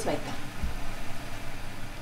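A steady low hum with a single dull thump about half a second in.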